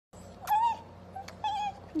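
Small dog whining twice, short high cries about a second apart, with sharp lip-smacking kisses close to the mouth.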